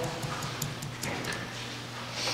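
Light, irregular clicks and small rustles of paper and pen being handled at a table, over a low steady room hum.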